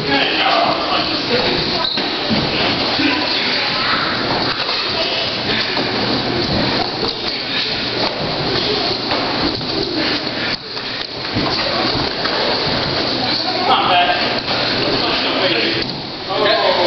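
Indistinct voices and the general noise of several pairs sparring in a large hall, with feet moving on a wooden floor and a few short thuds.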